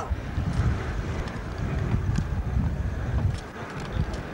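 Vehicle driving fast on a dirt road: a low, uneven rumble, with wind buffeting the microphone.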